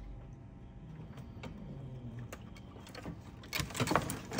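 Faint scattered clicks and light scraping from handling plastic tubs in a snake rack, with a louder rustle near the end.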